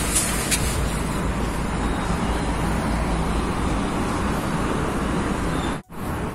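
Steady outdoor background noise, a low rumble with hiss, that cuts out briefly near the end.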